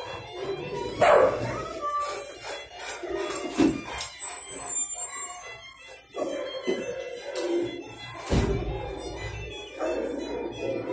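Dogs barking in shelter kennels over music playing in the background, with a few louder sharp barks or knocks standing out about a second in, near four seconds and just after eight seconds.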